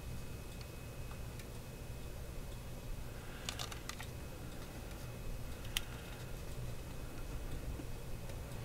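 A few faint, sharp clicks and taps of a diecast model car and its plastic display base being handled, over a low steady room hum.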